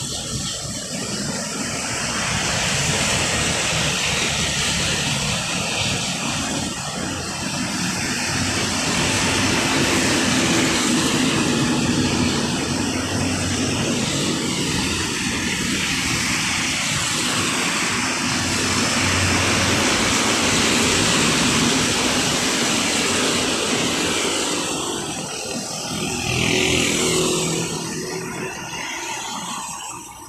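Road traffic passing close by, buses, cars and motorcycles, with engine drone swelling and fading as each vehicle goes past.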